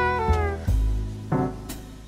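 Smooth jazz: a saxophone note slides down in pitch and fades, over scattered piano and bass notes, and the music thins out toward the end.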